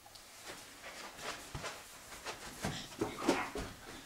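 Faint, irregular soft knocks and shuffles, about a dozen over a few seconds, like people moving about and handling things.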